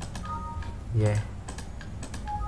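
A few light computer mouse clicks while working through Excel's spell-check, with a short spoken 'yeah' about a second in.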